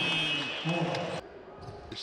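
Basketball arena sound under a commentator's voice, with a steady high-pitched tone through the first second. The sound cuts off abruptly about a second in, and quieter court ambience follows.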